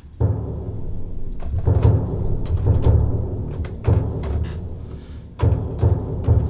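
Sampled orchestral bass drum from Kontakt's Factory Library, struck several times about every one and a half to two seconds. Each deep hit rings on and dies away.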